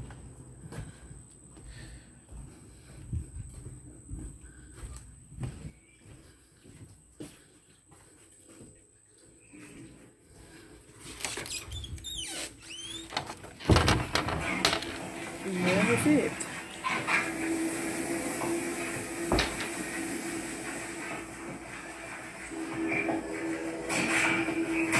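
Footsteps across a wooden porch, then a door squeaking as it opens and a loud knock about fourteen seconds in as it bangs. Another squeal follows, and after that a steady hum.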